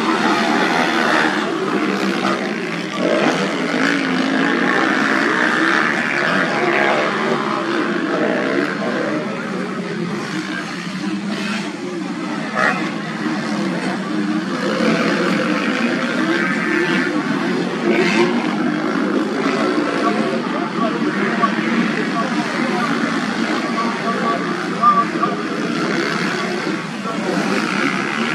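Motocross dirt bike engines running hard around the track, several bikes revving and easing off in turn, with a voice mixed in throughout.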